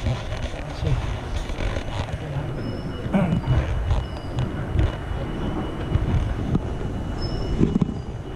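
Los Angeles Metro Red Line subway train rumbling in the underground station, with a few brief faint high squeals.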